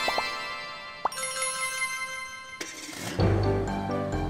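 Cartoon background music with a few short rising chirp-like sound effects as the character changes shape. About three seconds in, a whoosh leads into a louder, bass-heavy tune.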